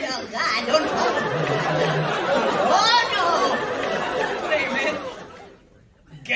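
Speech: a man talking in a put-on weird voice over crowd chatter, fading almost to silence near the end.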